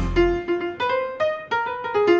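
Jazz sextet's loud answering chord with bass and drums cuts off just under half a second in. An acoustic piano then plays a short call phrase of single notes on its own: the call-and-response opening of the tune.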